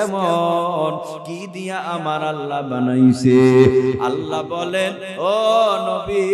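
A man's voice chanting in a drawn-out melodic tune through a microphone and loudspeakers, in the sung style of a Bangla waz sermon. Long held notes that waver and glide up and down, with a few short breaks between phrases.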